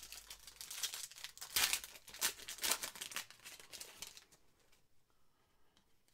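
A 2019 Panini Chronicles football card pack's plastic foil wrapper is crinkled and torn open by hand. A quick run of crinkling and ripping sounds dies away after about four seconds.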